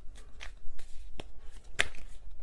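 Tarot cards being shuffled by hand: a few separate clicks and snaps of card on card, the sharpest a little before the end.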